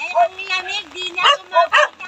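A dog yipping and barking over a woman's voice.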